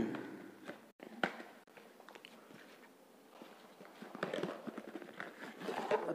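A cardboard retail box being opened by hand and a fabric-covered carrying case slid out of it: faint rustling and scraping of card, with a sharp click about a second in. The handling grows busier near the end.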